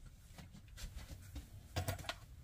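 A quiet room with a few faint clicks. Near the end comes a short cluster of small knocks as a metal teaspoon is picked up from beside a glass teacup.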